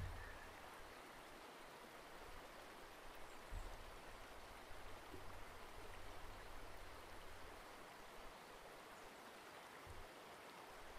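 Faint steady hiss with a low hum underneath: near-silent room tone from a desk microphone.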